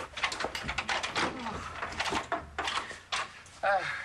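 A heavy door being unlocked and opened, with clicks and clatter through the first few seconds. A short voice is heard near the end.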